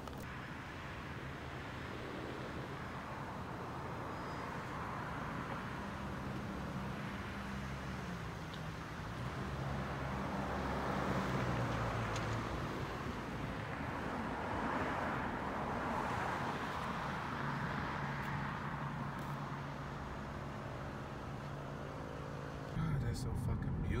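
Car driving along a city street, heard from inside the cabin: a steady hum of engine and road noise that swells and eases slowly.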